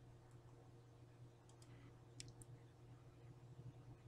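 Near silence: a low steady hum, with a few faint computer mouse clicks about two seconds in.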